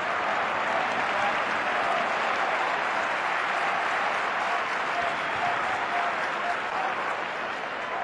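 Football stadium crowd: a steady wash of clapping and cheering from the stands, with scattered shouting voices, ebbing slightly near the end.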